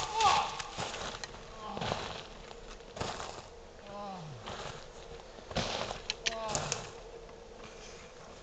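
A man groaning and moaning without words in a few short falling groans, with brief rustling noises of movement between them.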